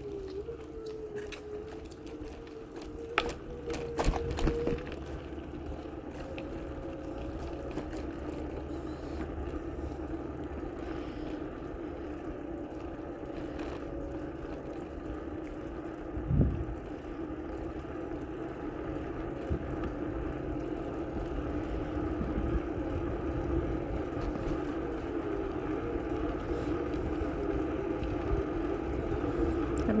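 Bicycle rolling over pavement: a steady low hum with a few faint steady tones, a few rattles about three to four seconds in, and a single thump about sixteen seconds in, the noise slowly growing louder toward the end.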